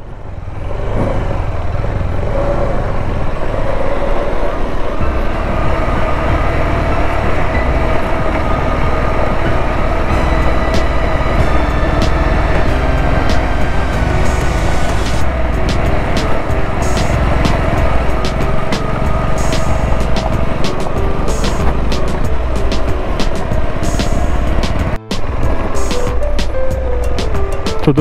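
KTM 390 Adventure's single-cylinder engine running steadily as the bike rides a dirt trail, mixed with background music. The sound breaks off briefly near the end.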